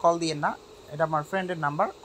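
A man talking in Bangla, narrating in two short phrases with a half-second pause between them.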